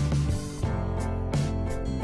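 Instrumental background music with a steady beat.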